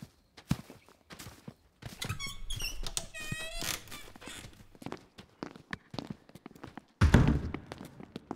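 Audio-drama sound effects of entering a church: scattered footsteps, a heavy wooden door creaking open, then a loud, deep thud as the door shuts about seven seconds in.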